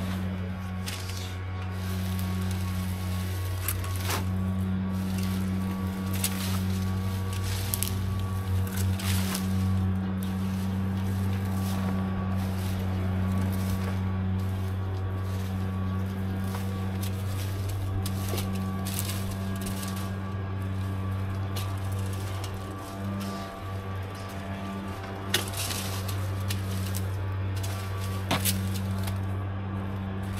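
A steady low mechanical drone under intermittent scrapes and knocks of hand raking and debris being gathered into a plastic trash can.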